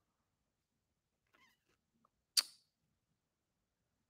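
Near silence, broken once, a little past the middle, by a single short, sharp click.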